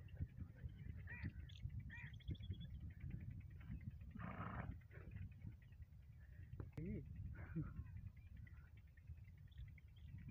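Low wind rumble on the microphone, with a few faint, brief voice-like sounds and a short breathy rush about four seconds in.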